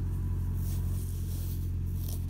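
A steady low engine-like hum runs without change.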